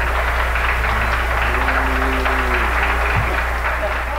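Audience applause and crowd noise on a live concert tape, over a steady low hum. A low held note swells and dies away briefly around the middle.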